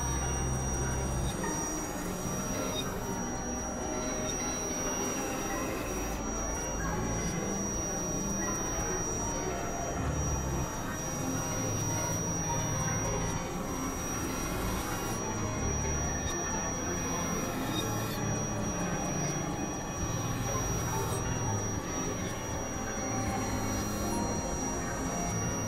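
Experimental electronic drone and noise music from synthesizers: a dense, noisy texture with a steady high-pitched tone held throughout and low notes that shift every second or two.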